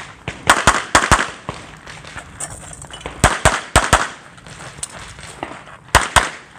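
Pistol shots fired in quick strings during a practical shooting stage. Three shots come within about two-thirds of a second near the start, then four more come in under a second about three seconds in, with fainter reports in between.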